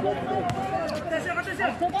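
Voices talking courtside at a basketball game, with a single sharp knock about half a second in.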